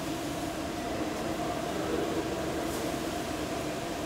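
A steady mechanical hum with two steady tones, one about an octave above the other, under a faint even hiss.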